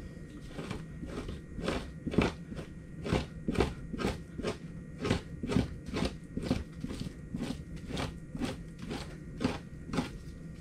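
Two-handled fleshing knife pushed in repeated strokes down a beaver pelt on a fleshing beam, scraping fat and meat off the hide. The strokes come about twice a second.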